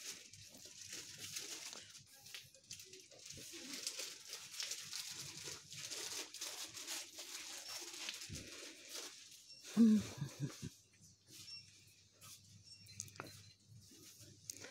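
Faint rustling and handling noise of a phone carried through a shop, over low shop background noise, with a short voice heard about ten seconds in and a few faint high tones near the end.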